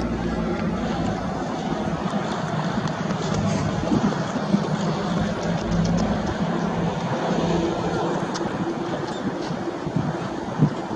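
Cessna 172M light aircraft's four-cylinder piston engine and propeller droning steadily as it flies low past overhead.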